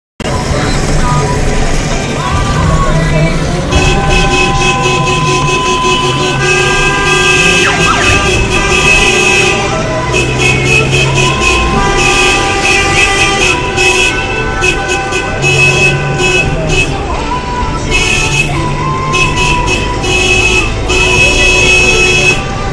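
Car horns honking over traffic noise, several at once, in long held blasts at different pitches that overlap and change every few seconds.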